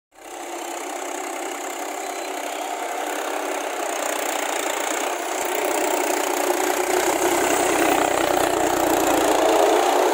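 Mahindra tractor's diesel engine running while the tractor works through deep paddy-field mud, growing steadily louder.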